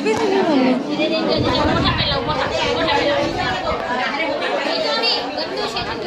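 Several women chattering at once, their voices overlapping in a busy room.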